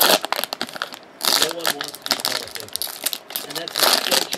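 Foil trading-card pack wrapper crinkling as it is handled and tossed onto a pile of empty wrappers, in short bursts at the start, just past a second in, and near the end.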